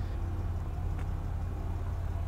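Land Rover Discovery Td6 turbodiesel V6 idling with a steady low rumble, and a faint click about a second in.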